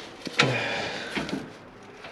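Metal clank with a brief ring about half a second in, followed by a few lighter knocks, as chains and metal parts in a compartment are handled by hand.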